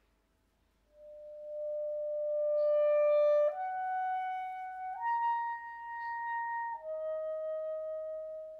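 Unaccompanied clarinet playing four long held notes, starting about a second in: the first swells to the loudest point, then the line steps up twice and drops back to a lower note near the end.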